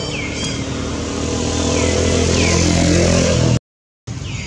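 A motor vehicle's engine running steadily and growing louder, as if approaching, with a few short falling chirps above it. The sound cuts off abruptly just before the end.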